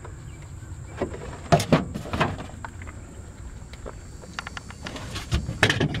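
A few sharp knocks and rustles, loudest in a cluster about a second and a half in, over a steady high insect chirr.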